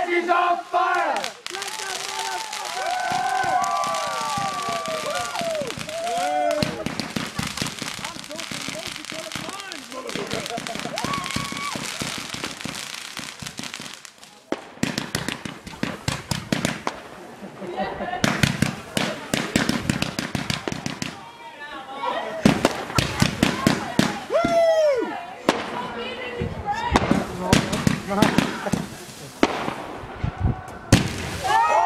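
Consumer firework cake going off: a long run of rapid crackling shots, thickening and getting louder in the second half.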